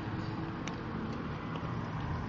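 Steady engine and road noise of a car, heard from inside its cabin with the window open.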